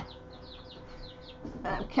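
Young chicks peeping: a run of short, high peeps that slide downward, several a second, over a faint steady hum. A voice begins near the end.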